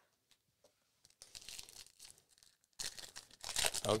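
Trading-card pack wrapper being crinkled and torn open by hand, in two spells of noise, the louder one near the end.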